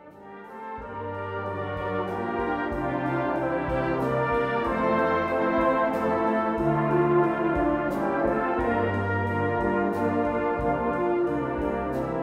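Brass ensemble music with sustained chords over a moving bass line and a steady beat, fading in over the first couple of seconds.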